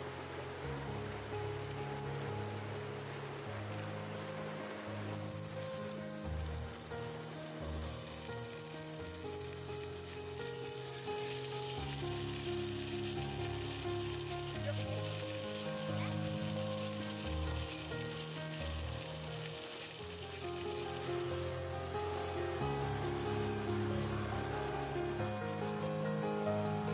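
Sausages sizzling as they fry in a small pan on a portable gas canister stove. The sizzling starts suddenly about five seconds in, over background music with slow, steady bass notes.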